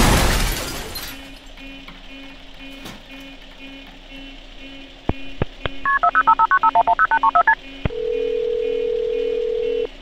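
The loud noise of a car crash dies away over the first second, leaving a faint electronic chime repeating rapidly. About five seconds in, a few taps on a phone are followed by a quick run of keypad touch tones as 911 is dialled. A steady ringback tone follows for about two seconds and cuts off as the call is answered.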